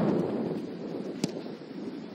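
Wind buffeting the camera's microphone, heaviest at the start, with one sharp knock a little past halfway.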